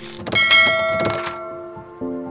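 Transition sound effect: a few sharp clicks in the first second, set in a bright chime of several ringing tones that fades out slowly.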